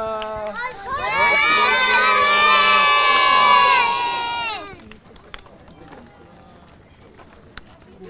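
A crowd of children shouting and cheering together, many high voices at once. It swells about a second in, stays loud for about three seconds and dies away about halfway through.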